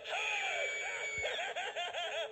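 Hugs the Clown animated talking doll playing its recorded voice through its small built-in speaker: a gliding, drawn-out voice, then a rapid run of cackling laughs near the end.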